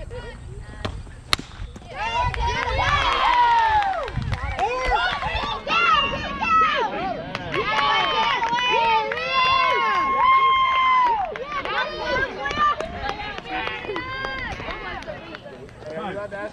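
A single sharp crack of a softball bat hitting the ball about a second in, followed by players and spectators shouting and cheering over one another, with one long drawn-out yell near the middle.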